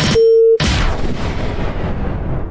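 Sound-effect sting for a radio segment: a short, steady mid-pitched beep lasting about half a second, then a loud boom that fades slowly.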